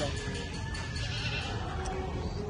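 Boer goat bleating, over a steady low rumble.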